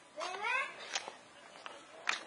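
A cat meowing once: a short call rising in pitch, about a quarter second in, followed by a few faint clicks.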